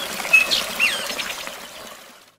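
Custom tinnitus-masking mix from the ReSound Relief app: a babbling brook with birds chirping, a few short chirps in the first second. It fades out near the end as playback is paused.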